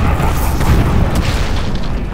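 Heavy, low booming rumble of a cinematic sound effect, with a laugh right at the start.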